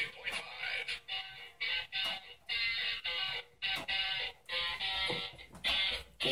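Music from an FM broadcast playing through the small speaker of a Snap Circuits FM radio kit, thin and tinny with little bass. The circuit is receiving a station. The sound cuts in and out in short stretches.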